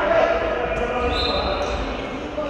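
Ball bouncing on a sports-hall court, the knocks echoing in the large hall, with a brief high squeak about a second in.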